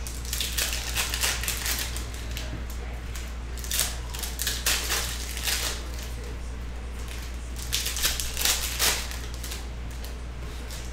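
Foil wrappers of Panini Prizm football card packs crinkling as they are torn open, and cards being handled and slid together. The crinkling comes in three spells: about a second in, around four to five seconds, and around eight to nine seconds. A steady low hum runs underneath.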